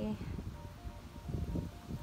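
Soft background music of short held notes, with low muffled noise from hands pressing potting soil down around a plant in a terracotta pot.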